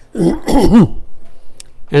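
A man clears his throat once near the start, a short pitched rasp lasting under a second.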